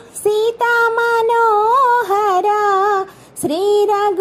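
Unaccompanied high solo voice singing a Telugu mangala harathi devotional song to Sri Rama, holding long notes with wavering ornaments. It breaks off for a breath at the start and again about three seconds in.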